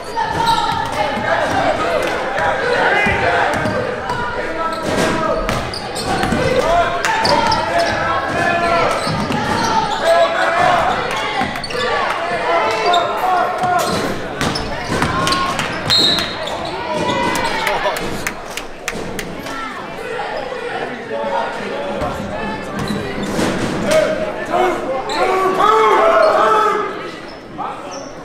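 Basketball being dribbled on a hardwood gym floor, short sharp bounces echoing in the large hall, under continual shouting and chatter from players, coaches and spectators.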